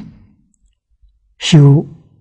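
Speech only: an elderly man lecturing in Chinese, pausing and then speaking one word about one and a half seconds in.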